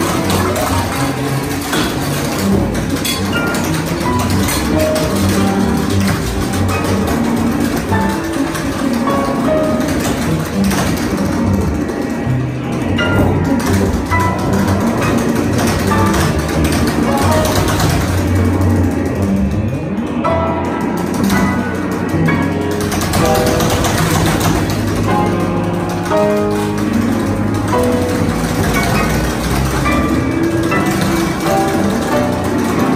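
Free-improvised music for piano, double bass, electric guitar and tap dance: tap steps striking a wooden platform amid scattered short piano and bass notes, with no pause.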